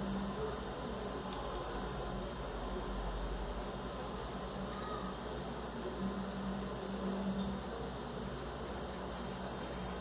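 Quiet, steady background hiss with a thin, high-pitched steady whine running throughout; no distinct handling sounds stand out.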